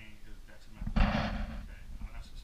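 A man speaking, cut across about a second in by a loud, short rush of noise lasting about half a second.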